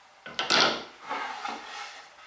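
Wood handled on a wooden workbench: a short knock and scrape about half a second in as the reclaimed pine board and panel gauge are moved, then quieter rubbing of wood on wood.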